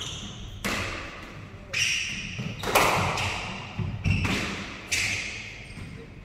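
Squash rally: a squash ball struck by rackets and hitting the court walls, sharp cracks about once a second, each ringing in the enclosed court.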